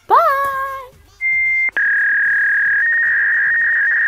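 A short voiced note slides up and is held for under a second. Then a loud, steady, high synthesizer tone starts, steps down a little in pitch after about half a second, and holds as end-screen outro music.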